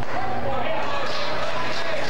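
Baseball field ambience: a baseball thuds into the catcher's mitt for a called strike, under a faint drawn-out shout from the field or stands.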